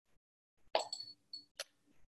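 A few faint, brief plop-like sounds and a sharp click, the first with a thin high ring to it.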